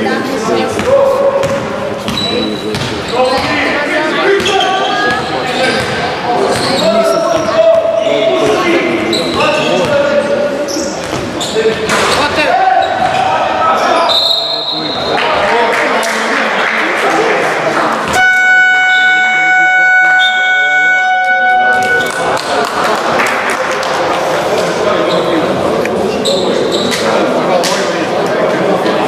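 Basketball game in an echoing sports hall: the ball bouncing and players shouting. About 18 seconds in, the scorer's buzzer sounds one steady electronic tone for about four seconds, stopping play, and voices follow.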